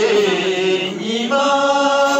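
A group of men singing a slow chant together, with long held notes that step from one pitch to the next.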